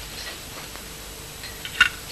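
Faint clicks of cutlery against a plate near the end, over a steady background hiss.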